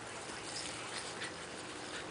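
Two miniature dachshund puppies play-wrestling: faint scuffling and small dog sounds over a steady background hiss.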